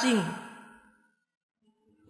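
A man's voice ends a word with a falling pitch and fades out within the first half second, followed by about a second of complete silence.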